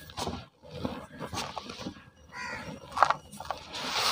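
Hands crumbling and squeezing dry cement powder and small cement lumps against a plastic tub, making irregular crunchy, dusty rubbing sounds in short bursts, with one sharper crack about three seconds in.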